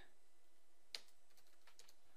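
Computer keyboard typing, faint: one distinct keystroke about a second in, then a quick run of lighter keystrokes near the end.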